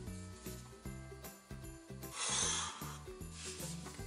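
A pencil rubbing along a ruler's edge on paper as a straight line is drawn, one stroke of just under a second about halfway through, over steady background music.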